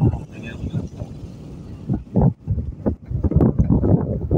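Voices talking in snatches over a low rumble and wind buffeting the microphone; the talking is loudest in the last second.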